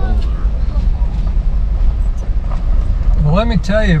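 Jeep driving up a gravel dirt road, heard from inside the cabin: a steady low rumble of engine and tyres.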